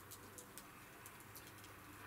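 Near silence: faint background tone with a few soft, brief ticks.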